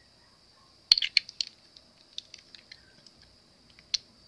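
Small plastic alcohol-ink dropper bottle being capped and set down on a table: a few sharp clicks about a second in, then faint scattered ticks and one more click near the end.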